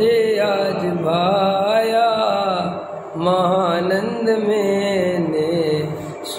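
A man chanting a Jain devotional verse solo, in two long melodic phrases with held, wavering notes. A short breath falls between the phrases about three seconds in.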